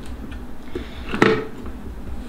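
Plastic food-processor parts being handled, with one sharp click about a second in as the slicing disc is seated in the bowl.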